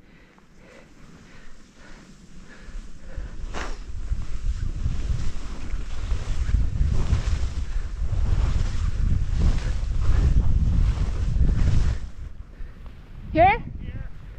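Wind buffeting the microphone and skis hissing through powder snow during a fast downhill run, building after a few seconds and dropping off about two seconds before the end. A short rising voice, like a whoop, near the end.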